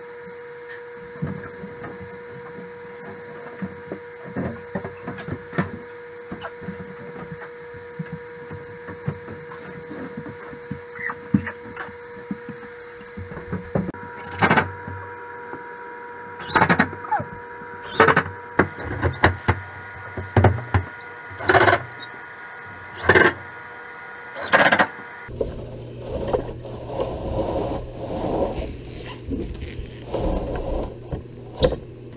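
Cordless drill driving screws into a textured wall panel in a string of short bursts, about one every second and a half, over a steady background hum. Near the end a steady low drone takes over.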